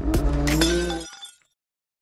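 Logo-intro sound effect: a held electronic tone with a glass-breaking crash and tinkling over it, fading away about a second in.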